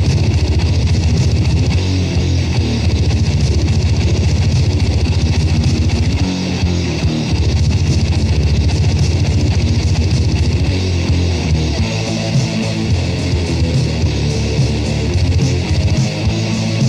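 Grindmetal played on distorted electric guitars over a fast, pounding low end. About twelve seconds in, the low end breaks into a choppier, stop-start pattern.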